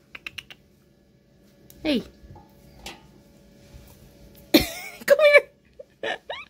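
Parakeet calling from inside a washing machine drum: a few quick clicks at the start, a single call falling in pitch about two seconds in, then a burst of loud, harsh squawks near the end.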